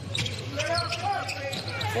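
Basketball game sound from the court during live play: the ball bouncing on the hardwood, with faint voices from the floor.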